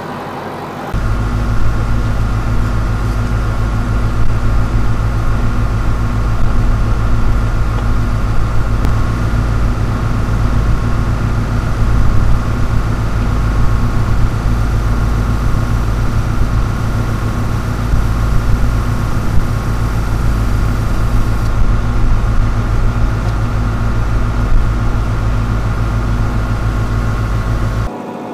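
Tractor engine running at a steady speed with the PTO driving the sprayer pump: a loud, steady low drone that starts suddenly about a second in and stops just before the end.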